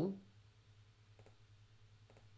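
A couple of faint computer mouse clicks over a low steady hum.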